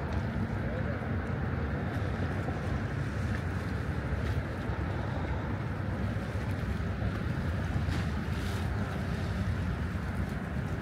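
Steady wind rumbling on the microphone by open river water, with small waves lapping against the stone shoreline.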